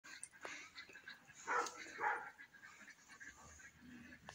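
Two short animal calls, about half a second apart, roughly one and a half seconds in, over quiet background noise with faint clicks.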